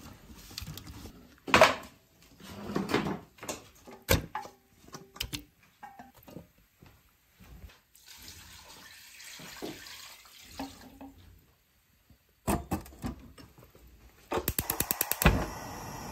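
Water sloshing and splashing as pork ribs are rubbed clean by hand in a stainless steel bowl in a sink, with a few knocks against the bowl. About halfway through, water is poured from a plastic dipper into a steel pot for about three seconds. Near the end comes a quick run of about ten clicks from a gas stove's igniter.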